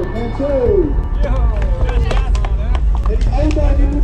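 People talking over a steady low rumble of wind buffeting the microphone, with a few short clicks.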